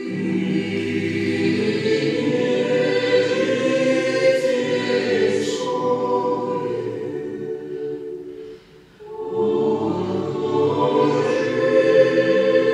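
A choir singing a slow sacred piece with long held notes, pausing briefly between phrases about two-thirds of the way through.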